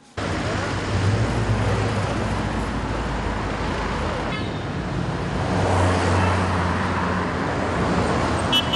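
Street traffic: cars driving past with engine hum and tyre noise, a steady wash that starts suddenly.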